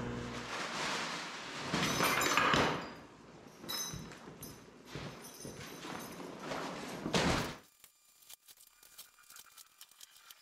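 Crinkling and rustling of a plastic tent footprint ground sheet being handled, loudest about two seconds in, stopping suddenly about three-quarters of the way through. After that, near silence with a few faint knocks.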